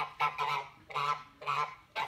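Grey domestic geese honking: a run of about six short, repeated honks.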